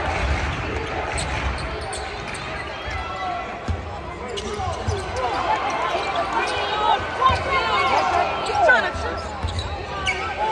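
Basketball game play on a hardwood court: the ball bouncing as it is dribbled, and sneakers squeaking in short chirps that come thick and fast in the second half, over voices in the crowd.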